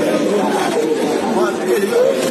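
A group of men chattering and calling out over one another, several voices at once.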